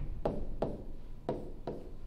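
A pen or stylus knocking on a hard writing surface as numbers are written, a short tap with a brief ring about twice a second, unevenly spaced.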